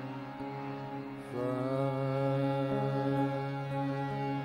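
Male vocalist singing a thumri in long held notes over harmonium accompaniment and a steady low drone. A new, louder note enters about a second in, and the pitch moves again near three seconds.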